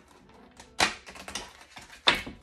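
Small objects handled on a tabletop: one sharp click a little under a second in, then a few lighter taps and clicks.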